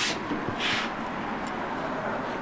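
Two short, hissing rustles close to the microphone, one right at the start and one about two-thirds of a second later, then a steady low hiss: a six-week-old Brittany puppy nosing and mouthing at the camera.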